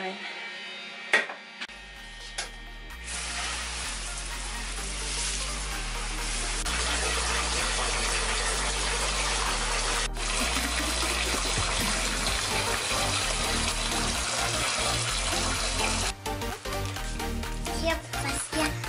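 Bathtub filling from a running tap, a steady rush of water under background music with a stepping bassline; the water stops abruptly near the end and the music carries on.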